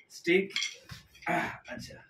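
Wooden drumsticks knocking and clattering together as they are handled, several short irregular clicks and knocks.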